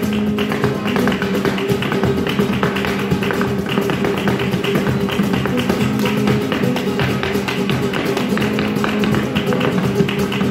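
Live flamenco: acoustic guitar and cajón with hand clapping (palmas) and the dancer's shoes tapping out footwork on a portable dance board, a dense run of sharp taps over the guitar.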